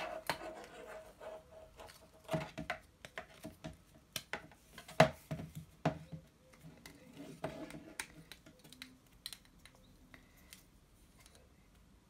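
Handling noises of a plastic ruler and a flat PCI Express power-supply cable being moved and laid out on a wooden desk: scattered clicks, taps and light scraping, the loudest knock about five seconds in.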